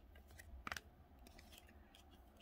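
Faint handling of trading cards: a soft card click about two-thirds of a second in, then light rustling as a card is set aside and the next one picked up.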